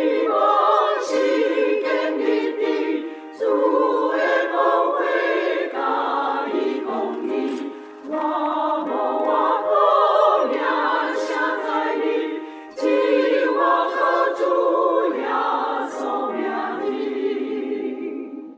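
A church choir, mostly women's voices, singing a hymn in Taiwanese in sustained phrases a few seconds long, with short breath breaks between them.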